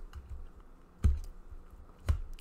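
A few soft clicks and taps, with one louder knock about a second in, as of small objects being handled on a desk.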